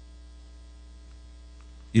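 Steady low electrical mains hum in the recording, with a man's voice starting again right at the end.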